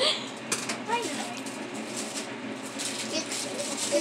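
Children talking quietly, with a few light clicks and rustles of handling.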